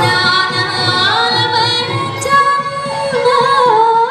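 A woman singing a Khmer song with wavering, ornamented vocal lines, accompanied by a live traditional Khmer ensemble with a steady drum beat.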